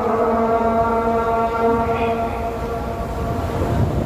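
Muezzin's Maghrib adhan (Islamic call to prayer) sung over mosque loudspeakers: one long held note that fades out near the end, over a low rumble.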